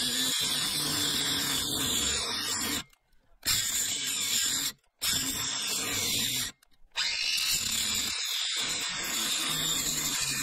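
Ryobi angle grinder with a cut-off wheel cutting through a steel floating-shelf bracket rod, a steady high grinding whine. The sound cuts out abruptly three times for a moment near the middle.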